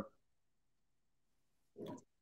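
Near silence in a pause of a video-call conversation, then a short, faint vocal sound from the host near the end, just before he speaks.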